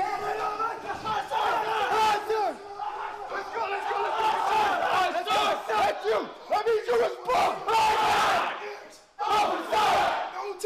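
Many recruits yelling together at the top of their lungs, with a drill instructor shouting over them. The voices overlap into a continuous loud din that breaks off briefly about nine seconds in.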